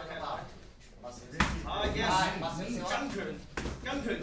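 Shouting voices, with a sharp impact about a second and a half in and a smaller one near the end: strikes landing between two MMA fighters.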